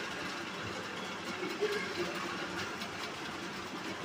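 Coloured pencil shading on paper: a faint, steady scratching.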